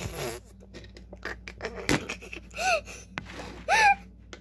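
Handling noise of plastic toy pieces and the phone being moved: scattered light clicks and knocks, one sharper click about halfway through. Two short high-pitched vocal sounds from a child near the end.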